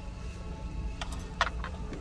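A few light clicks of aluminum knitting needles being handled at a plastic display rack: one about a second in, the sharpest just after it, and a third soon after. A steady low hum runs underneath.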